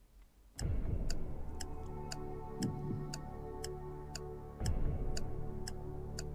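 Quiz-show countdown timer music: a clock-like ticking, about two ticks a second, over a low sustained synth bed. It starts about half a second in and swells briefly near the end.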